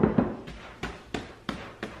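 A large glass mixing bowl knocks down onto a countertop, followed by a run of short soft thumps and knocks, about three a second, as risen bread dough is punched down by hand in the bowl.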